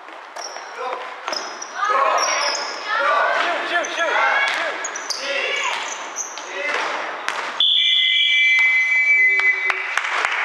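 A basketball being bounced and players' sneakers squeaking on a hardwood gym floor, with players' voices, all echoing in a large hall. Near the end a steady high-pitched tone holds for about two seconds.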